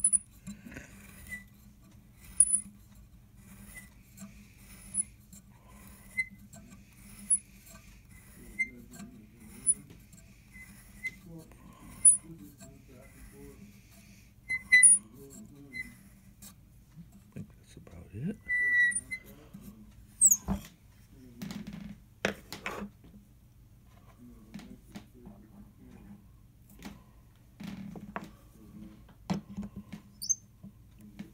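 A fluted tool turning by hand in a hole in a maple tuning-pin block, squeaking against the wood about once every second and a bit, a dozen or so times. After about 16 s the squeaks stop, and a cluster of sharper clicks and knocks with a brief squeal follows.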